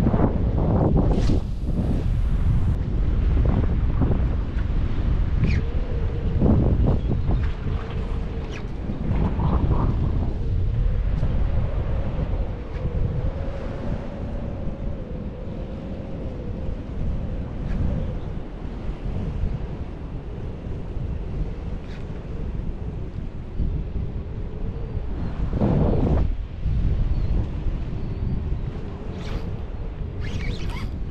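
Gusty wind buffeting the microphone, with choppy water moving along the rocks beneath.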